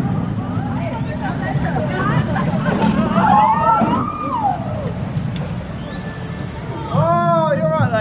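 Steel roller coaster train running along its track with a steady low rumble, riders' shouts rising and falling about three to four seconds in. A person's voice comes in near the end.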